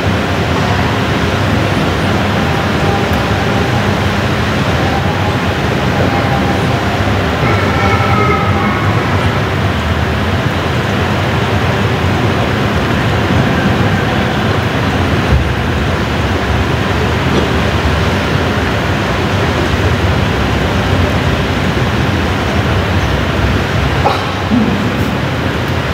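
Steady, loud rushing noise with no clear pattern, and a faint wavering tone about eight seconds in.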